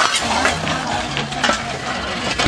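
Metal shovels scraping loose dirt and gravel across an asphalt road, with irregular scrapes and clinks.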